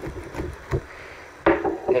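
Hands handling a shrink-wrapped cardboard booster box: a few light knocks and rubbing of fingers on the plastic film and card.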